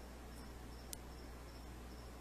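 Faint room tone during a pause in speech: a steady low hum with faint, intermittent high-pitched chirping and a single soft click about a second in.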